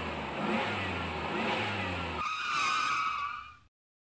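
A motor vehicle engine sound effect revving, with rising swoops in pitch; about two seconds in it gives way to a high, wavering squeal that fades and cuts off shortly before the end.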